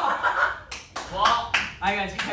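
Young men's voices shouting excitedly, with a few quick hand claps a little past halfway.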